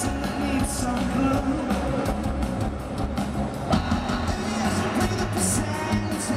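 Indie rock band playing live through a large PA, with electric guitar, keyboards and drums, heard from within the crowd.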